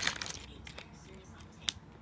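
Light handling sounds of a foil minifigure packet being set down and pressed on a wooden tabletop. A sharp click of the scissors comes near the end.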